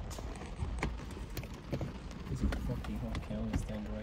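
Faint, low talk inside a car cabin, mostly in the second half, with scattered light ticks and taps at irregular intervals.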